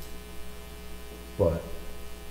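Steady electrical mains hum with a faint buzz in a pause between a man's sentences. One spoken word comes about one and a half seconds in.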